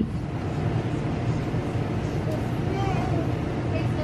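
A steady low rumbling noise, with faint voices far off about three seconds in.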